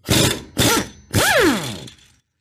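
Impact wrench hammering on a threadlocked 5/8-inch pulley bolt to break it loose, in three short bursts. The last burst ends in a whine that drops in pitch as the wrench's motor winds down.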